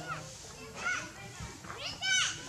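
Monkeys calling: two short, high-pitched squeals that rise and fall, one about a second in and a louder one at the end.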